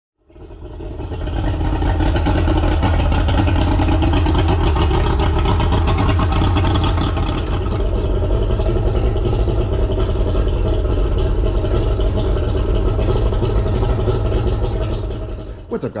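An engine running steadily at an even speed, with a strong low rumble; it fades in over the first couple of seconds and fades out near the end.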